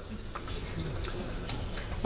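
Pause in a speech: faint hall room tone with a few light clicks scattered through it.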